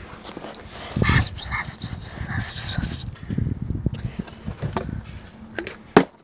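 Soft close-up rustling and handling noises from hands working a small object near the microphone, ASMR-style, with one sharp tap near the end.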